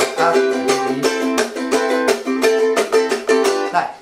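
Ukulele strummed in a quick, even eight-beat pattern, C moving to A minor, with a melody line picked out on the first string and kept going over the chord change.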